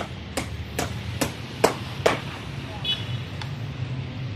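Hammer blows at a steady pace of about two to three a second, stopping about two seconds in, followed by two lighter strikes, one with a short metallic ring. A steady low hum runs underneath.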